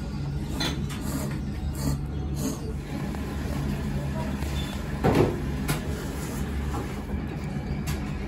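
Restaurant indoor ambience: a steady low hum with indistinct background voices and faint clicks, and a brief louder knock about five seconds in.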